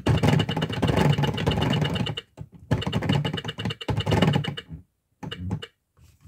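Plastic gears of a toy teaching clock clicking rapidly as its hands are turned by hand, in three runs with short pauses between them, the last one brief.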